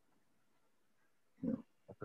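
A short pause in a man's speech: quiet room tone, then a brief vocal sound from him about one and a half seconds in, just before he starts talking again.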